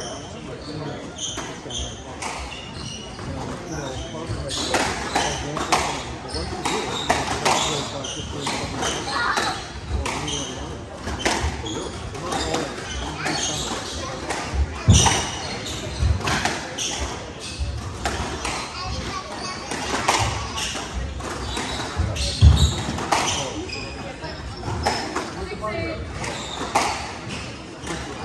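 Squash rally: the ball hit by racquets and striking the court walls in an uneven series of sharp smacks, with a few heavier thuds about midway, echoing in a large hall.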